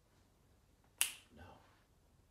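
A single sharp finger snap about a second in, followed by a short spoken word.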